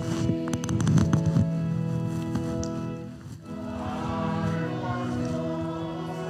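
Organ accompanying a congregation singing a hymn, held chords with a short break between phrases a little past the middle. A few clicks sound in the first second or so.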